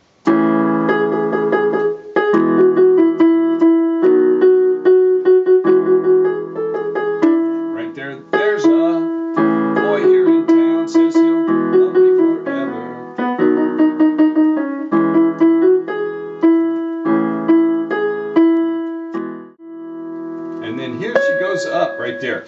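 Casio electronic keyboard on a piano voice playing a slow melody of held notes in the right hand over sustained left-hand chords.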